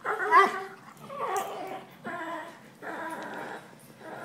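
Two puppies play-fighting, giving a run of high-pitched growls and whines, about four in a row, the first the loudest.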